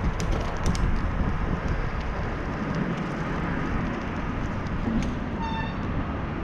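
Wind rumbling on the microphone and road noise of a bicycle riding along a street, with a few light clicks early on and one short, high beep near the end.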